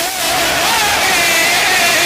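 A man's voice over a loudspeaker holds one long sung note of a qaseeda recitation, wavering slightly in pitch, over a haze of crowd noise.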